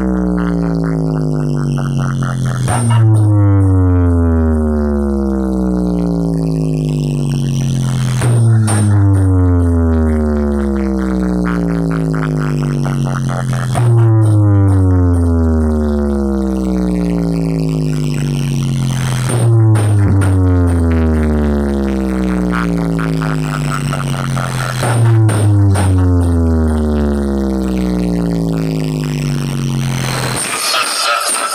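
Stacked DJ speaker wall playing a speaker-check track: a loud, buzzy bass tone slides slowly down in pitch over about five seconds, then jumps back up and starts again, about five times over.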